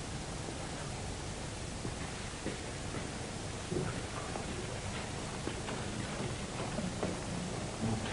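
Faint footsteps on a hard corridor floor, coming about every half to two-thirds of a second and clearer in the second half, over a steady hiss.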